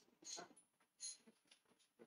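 Near silence: faint room tone with a few soft, brief sounds and a faint, high, steady whine that starts about a quarter of the way in.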